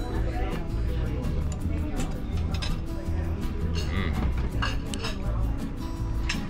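Fork clinking against a plate a few times over steady background music with a low bass line.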